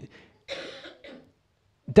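A single short cough about half a second in, quieter than the speech around it.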